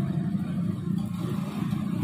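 Motor scooters running in street traffic, a steady low engine sound.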